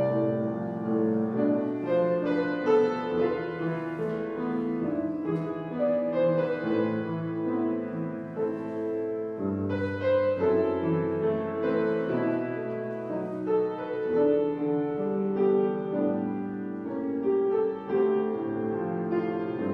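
Piano playing a slow piece in held chords over a bass line, with a deep bass note coming in about halfway through.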